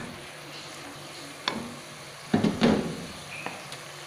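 Chilli paste sizzling as it fries in hot oil while a wooden spatula stirs in sugar, salt and stock powder. Sharp scrapes and knocks of the spatula against the pan come once about a third of the way in and in a louder cluster just past halfway.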